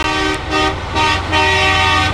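A multi-tone air horn sounding a chord in a run of blasts: a long one ending shortly after the start, two short ones, then a longer one, over a low rumble.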